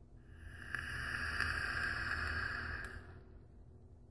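Vape draw on an e-cigarette box mod with an Innokin iSub Apex tank: one long, steady hiss of air pulled through the tank's airflow, lasting about three seconds, then fading.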